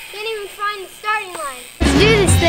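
A child's voice talking quietly, then loud music with drums and a heavy bass line cuts in suddenly near the end.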